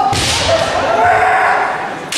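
Kendo fencers' kiai, long held wavering yells, with a sharp crack near the start that rings out in the hall.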